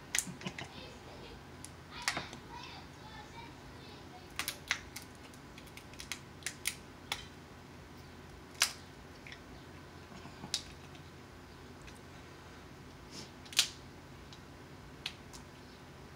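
Close-miked eating noises from a seafood mukbang: about a dozen scattered sharp clicks and smacks of chewing and handling crab and lobster, irregularly spaced, the two loudest in the second half.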